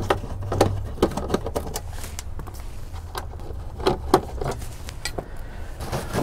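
Scattered light clicks and small rattles of hands working at a truck's glove box, with small screws coming out of the dash and the glove box liner being handled, over a low steady hum.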